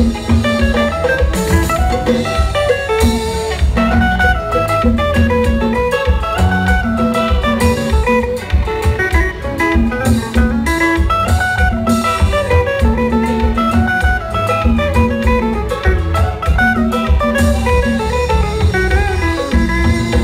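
Live compas band playing at full volume: busy guitar lines over bass, drum kit and keyboard with a steady beat.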